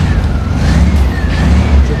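A siren-like tone rising and falling in pitch about once a second, over a steady low rumble.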